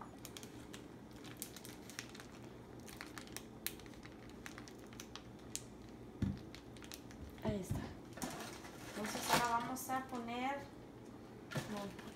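Zip-top plastic freezer bag of cut melon being handled and pressed shut: thin plastic crinkling with many small clicks and crackles, then a couple of light knocks on the counter.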